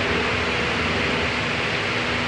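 Steady, even rushing noise of the room's ventilation fans, with no distinct knocks or clinks.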